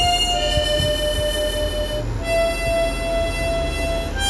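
Background music led by a harmonica playing long held notes that change pitch a couple of times, over a steady low rumble.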